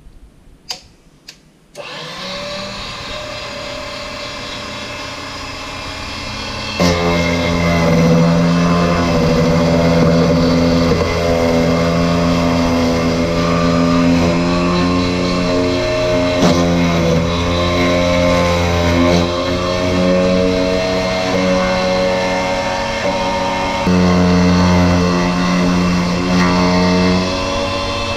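Defu 368A vertical key cutting machine: its motor is switched on about two seconds in and runs steadily. About five seconds later the cutter bites into the key blank and the sound grows louder, its pitch wavering as the blank is fed along the cut.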